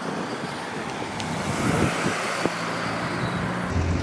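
Road traffic noise: a car passes, swelling about two seconds in, with a low engine hum underneath that grows near the end.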